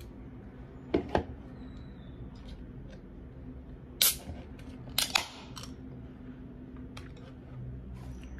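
Aluminium drink can handled with a few sharp clicks and cracks, the loudest about 4 s in and another about 5 s in: the can's pull tab being worked open.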